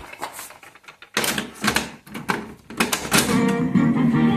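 Music with strummed guitar starting up from an 8-track tape in a Sanyo GXT-4730KL stereo's cartridge player. It comes in abruptly just after a second in, following a few clicks, and settles at a full steady level.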